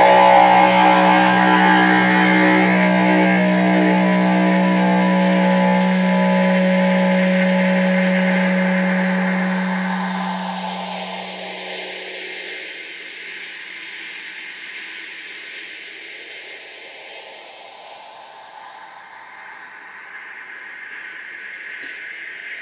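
Final chord on an Epiphone semi-hollow electric guitar ringing out through the amplifier. One low note holds longest and dies away about ten to twelve seconds in, leaving a faint steady hiss.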